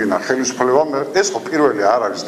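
A man speaking steadily into a podium microphone, in continuous monologue.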